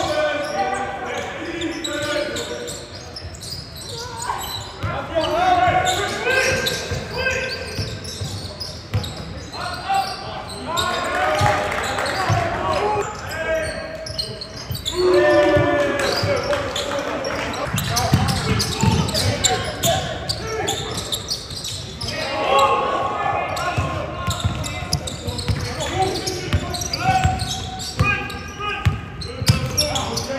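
Indoor basketball game in a large sports hall: players calling out to each other on court, with a basketball being dribbled on the hardwood floor.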